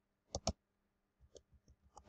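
Computer keyboard keystrokes: two sharp key clicks about a third of a second in, then a few faint taps.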